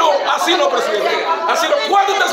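Several people's raised voices speaking over one another at once, a heated argument with a man shouting.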